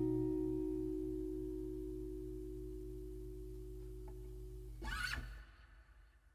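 The final strummed acoustic guitar chord of a ballad rings out and slowly dies away. About five seconds in, a brief scratchy noise comes as the sound stops, and then there is near silence.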